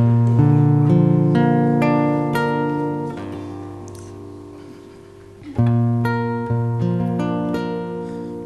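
Acoustic guitar played fingerstyle: a run of single plucked notes rings out and slowly fades over about five seconds, then a second loud phrase of picked notes begins.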